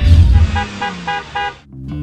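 The end of a TV segment's title jingle: a closing low hit, then a quick series of short car-horn toots used as a sound effect, fading into a low held tone.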